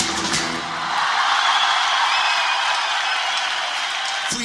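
Guitar music stops right at the start, giving way to steady audience applause.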